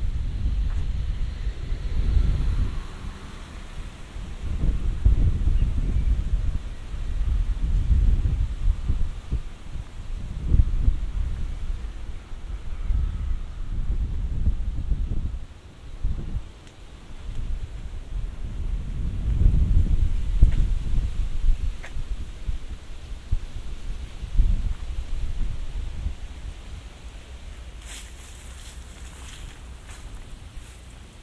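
Wind buffeting the microphone in uneven low rumbling gusts that come and go every few seconds, easing off near the end.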